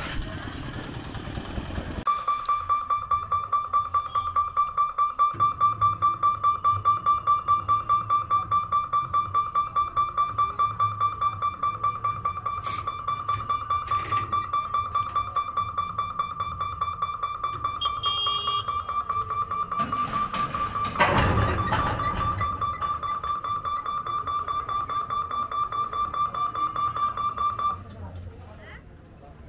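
Level crossing warning bell ringing with a rapidly pulsing, steady high tone while the boom barrier lowers; it starts a couple of seconds in and stops abruptly as the barrier closes. A brief louder rush of noise breaks in about three-quarters of the way through.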